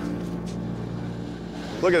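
Steady low drone of heavy diesel mining machinery running, with a man starting to speak near the end.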